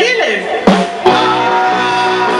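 Rock-and-roll band playing: a voice ends a sung line with a falling slide, then two sharp hits land about a second in and the guitar and band carry on with steady chords.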